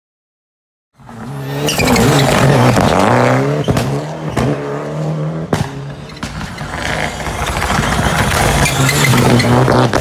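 Ford Fiesta Proto rally car's engine, loud and revving hard through the gears, rising and dropping in pitch with each shift as it approaches and passes close by, with sharp cracks from the exhaust between shifts. The sound starts about a second in.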